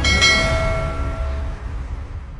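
A bell-like chime struck just after the start, its several ringing tones held over a low rumble and slowly fading away.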